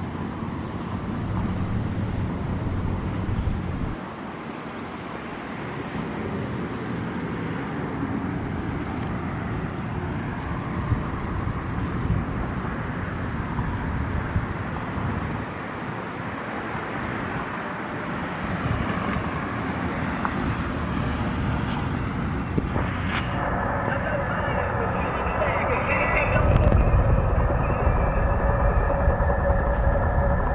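Outdoor traffic ambience from a nearby road: a steady wash of passing vehicles. About three-quarters of the way through the sound changes, with a couple of steady high tones joining in. A deeper rumble grows louder over the last few seconds.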